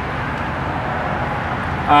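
Steady outdoor background noise, even and unbroken with no distinct events; a man's voice begins right at the end.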